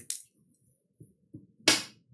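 A pause in talk: quiet room tone with two faint soft knocks, then a short hiss near the end.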